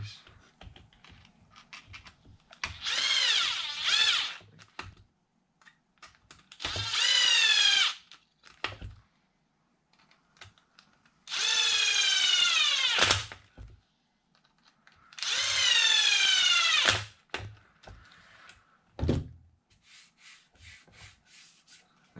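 Cordless electric screwdriver driving screws into an RC truck's plastic chassis: four runs of a motor whine, each a second or two long and falling in pitch as the screw tightens. Light clicks of handling come between the runs.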